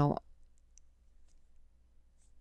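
The end of a spoken word, then near silence broken by a few faint clicks.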